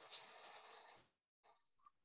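Faint rustling hiss for about a second, followed by a shorter rustle and a small click.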